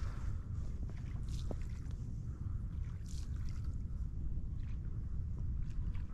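Wind buffeting the microphone: a steady low noise, with a few faint soft rustles.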